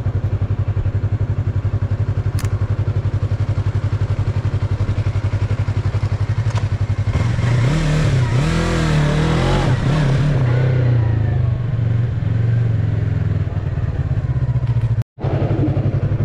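Yamaha MT-03 parallel-twin engine idling with an even, pulsing beat, its pitch rising and wavering for a few seconds in the middle as the throttle is opened. The sound cuts out briefly near the end.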